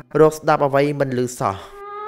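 A man's voice speaking with strongly rising and falling pitch, stopping about one and a half seconds in. Then a sustained instrumental note fades in as music begins.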